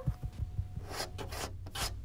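Rubbing and scraping sounds: a few dull thumps at the start, then short brushing scrapes about a second in and again near the end, over a low hum.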